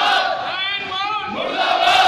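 A crowd of men shouting protest slogans together. The shouts are loudest at the start and again near the end.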